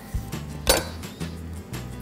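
Soft background music, with one sharp knock of a small kitchen knife on a wooden cutting board about two-thirds of the way in and a few lighter clicks around it, as spring onions are trimmed.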